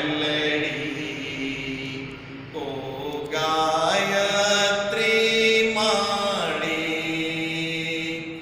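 Devotional singing in a chant style: a voice holding long sung notes, each a second or two, with a short lull about two and a half seconds in before the singing swells again.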